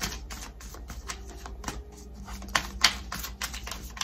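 An oracle card deck being shuffled by hand: a quick, irregular run of card clicks and slaps, with the sharpest snaps a little before three seconds in.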